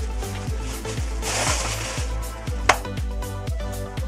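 Electronic dance background music with a steady kick drum beat, about two beats a second, and a brief swell of hiss just after the first second. A single sharp click comes about two-thirds of the way through.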